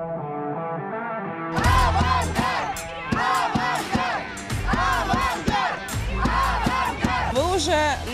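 Background music for about the first second and a half, then a group of fans shouting a rhythmic chant in unison, with strokes on a bass drum and cymbal between the phrases.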